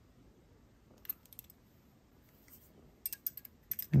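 Small metallic clicks of jewelry pliers handling a small jump ring on a metal dragonfly pendant: a couple of clicks about a second in, then a quick run of clicks near the end.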